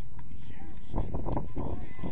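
Wind rumbling on the microphone, louder about a second in, with shouts of players and coaches from across a football pitch.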